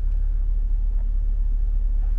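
Steady low rumble of a 2021 Ford F-250 Super Duty idling, heard inside the cab.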